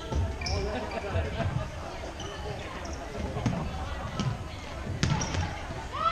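Floorball match play in a large sports hall, echoing: repeated thuds of players' feet on the court floor, scattered stick-and-ball clacks with a sharp one about five seconds in, and players' short shouts.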